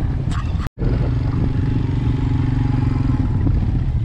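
A vehicle engine running steadily at low revs, with a momentary dropout in the sound about three-quarters of a second in.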